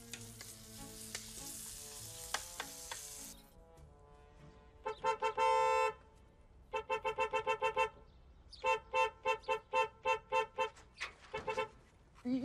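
Food sizzling in a pan with background music for the first few seconds. Then a car horn is honked over and over: a few short toots and one long blast about five seconds in, followed by two runs of rapid, evenly spaced toots.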